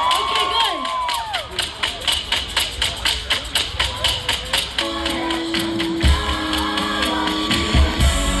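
Live band playing through a festival PA, heard among a cheering crowd. A fast, steady beat of sharp hits runs for the first few seconds, then held notes and a deep bass come in about five seconds in.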